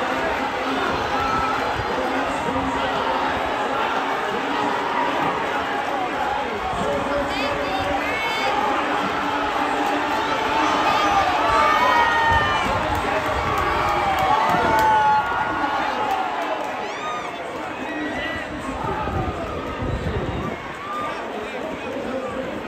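Racetrack crowd shouting and cheering through a horse race's stretch run. Many voices overlap, building to a peak about twelve to fifteen seconds in as the field passes the finish, then dying down.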